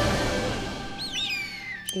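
Film soundtrack music fades away, and about a second in a bird gives a screeching cry that glides downward in pitch: the movie's vultures over the battlefield.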